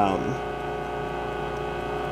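Ansafone KH-85 answering machine running, playing its tape through at normal speed, a steady hum with several even tones.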